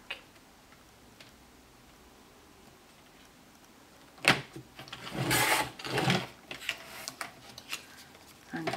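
Paper trimmer cutting black cardstock: a sharp click about four seconds in, then the cutting head sliding along its rail through the card, with a few lighter clicks near the end.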